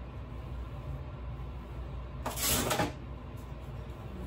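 One brief rustling swish of a hairbrush drawn through the long hair of a half wig, about two seconds in, over a steady low hum.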